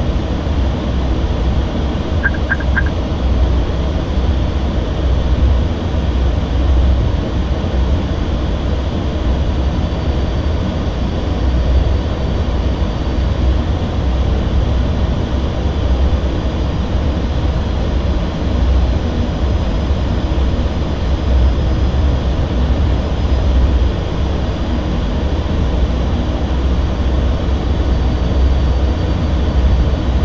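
Steady, loud cockpit noise of an Airbus airliner on approach, from airflow and engines, heavy in the low end. About two seconds in, a short run of three quick high beeps sounds from the cockpit.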